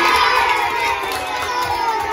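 A group of children cheering and shouting together, with some hand clapping; many high voices rise and fall at once.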